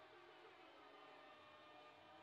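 Near silence: the narration has ended, leaving only a very faint steady background.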